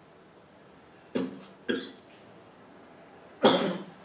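A person coughing three times: two short coughs about a second in, half a second apart, then a louder cough near the end.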